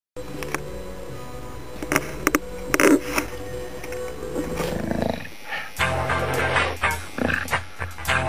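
Coil tattoo machine buzzing as it works on skin, with a short break just after the middle, over music. There are a few loud clicks about two to three seconds in.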